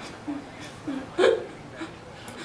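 A woman sobbing in short, catching breaths, four sobs with the loudest about a second and a quarter in.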